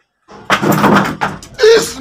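A loud rushing burst with a few knocks, starting about half a second in, as a curtained doorway is thrown open, then a man's loud shout near the end.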